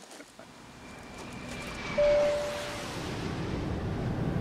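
Airliner cabin noise swelling up, with a single cabin chime about two seconds in, the loudest sound, as a cabin announcement is about to begin.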